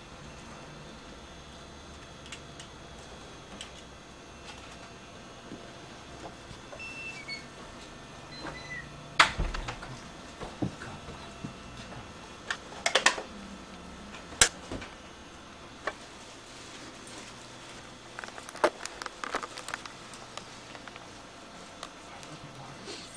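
Quiet room tone with scattered sharp knocks and clicks: one loud knock about nine seconds in, a short cluster a few seconds later, and a run of smaller clicks near the end.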